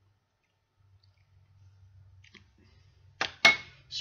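A faint low hum, then two sharp clicks about a quarter second apart near the end, the second the loudest with a brief ring.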